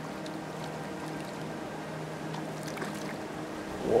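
River water sloshing and lightly splashing as a small white bass is rinsed off by hand in the shallows, over a steady low wash of moving water.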